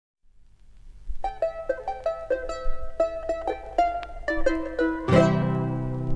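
Andean folk music from a 1972 vinyl LP played on a Crosley record player: after about a second of faint low hum, a plucked string instrument plays a quick run of single notes, and a fuller strummed chord with bass comes in about five seconds in.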